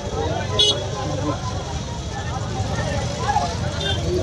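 Crowd of many people talking at once over a steady low rumble of vehicle engines. A brief high-pitched sound cuts through about half a second in.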